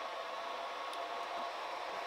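Creality Ender 3 V2 3D printer running as a print job starts: an even fan hiss with two faint steady whining tones, the higher one fading out about three-quarters of the way through.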